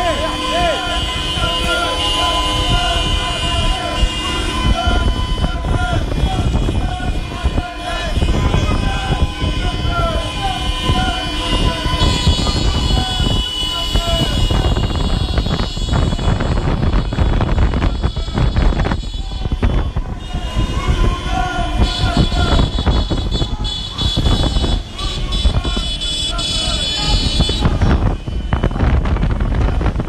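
Car horns sounding in long held blasts, some overlapping, over shouting voices, car and motorcycle engines, and wind rushing on the microphone of a moving vehicle.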